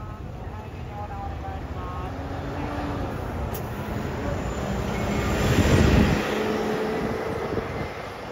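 A city route bus driving past close by, its engine and tyre noise building to a peak about six seconds in and then fading as it pulls away.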